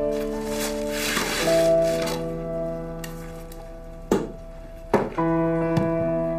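Soft instrumental background score of sustained keyboard chords that change every second or two, with two short knocks about four and five seconds in.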